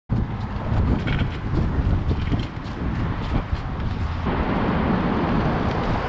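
Outdoor rumble of Onewheel boards rolling and carving on asphalt, mixed with wind on the microphone. A few faint ticks come in the first few seconds, and the rumble turns into a more even hiss after about four seconds.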